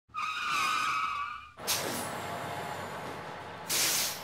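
Vehicle sound effects for an intro: a wavering tyre squeal lasting about a second and a half, then a sharp burst and a steady rush. Near the end comes a loud short hiss like a bus's air brakes.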